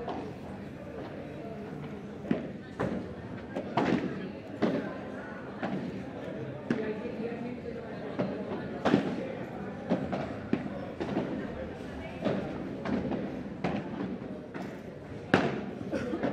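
Padel rally: the ball is struck back and forth with padel rackets, giving a dozen or so sharp pops at irregular intervals over background voices.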